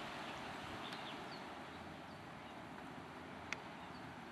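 Faint, steady outdoor background hiss on a hillside trail, with a few faint short high chirps early on and one sharp click about three and a half seconds in.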